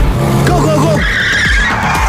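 Action-film trailer sound effects: a vehicle engine, then a high tyre screech from about a second in that runs to the end.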